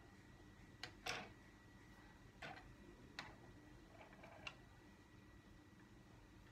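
Near silence with a handful of faint, irregular clicks from handling a small plastic GPS tracker unit.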